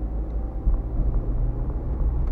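Low, steady rumble of a car's engine and tyres while driving slowly, heard from inside the cabin, with a few faint light clicks.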